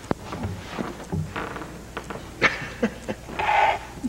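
Scattered knocks, clicks and rustling of a person settling in at a lectern, handling papers and the microphone.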